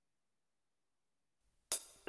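Silence, then near the end a single short cymbal hit, the first sound of a recorded song with drum kit.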